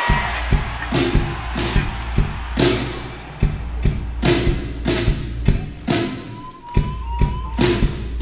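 A live rock band starting to play: a low bass line under repeated hard drum hits, roughly two a second.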